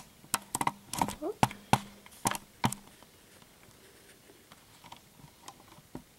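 Handling noise from a metal nail stamping plate being moved about by hand: a quick run of sharp clicks and light knocks in the first three seconds.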